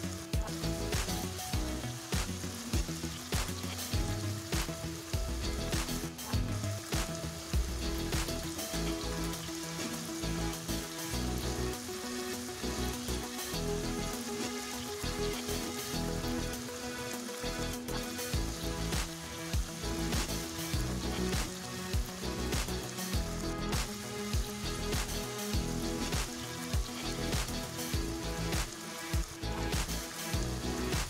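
Paneer cubes shallow-frying in hot oil in a nonstick kadai, sizzling steadily with small crackles. A wooden spatula now and then clicks and scrapes as it turns the cubes.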